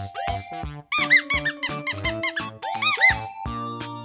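Upbeat children's background music with a steady beat. Over it come cartoon squeak sound effects: a quick string of high chirps that rise and fall about a second in, and another near three seconds.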